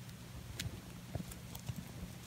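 A rabbit chewing fresh leafy greens: a run of crisp, irregular crunching clicks, several a second, as its teeth bite through the leaves.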